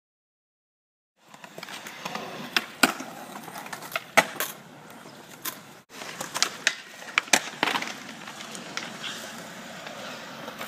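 Skateboard wheels rolling on concrete, with several sharp clacks of the board hitting the ground. It is silent for about the first second, and the sound drops out briefly near the middle.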